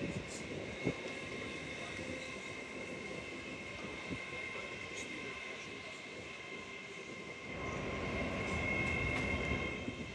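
Train at a station platform: a steady high-pitched whine over rail noise, with a low rumble building over the last two seconds or so as it moves.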